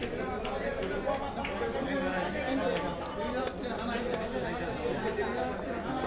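Several people talking over one another, with occasional short sharp knocks of a knife blade on a wooden chopping block.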